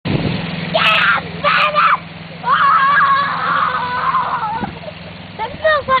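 Small light aircraft's engine running steadily in the distance during its takeoff run, a low drone, with a person's voice calling out loudly over it several times, one call held for about two seconds.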